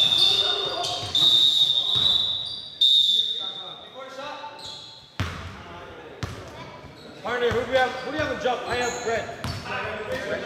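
Indoor basketball game in a large echoing gym: a high, steady whistle blows for the first few seconds while a basketball bounces on the hardwood court, then players' voices are heard from about seven seconds in.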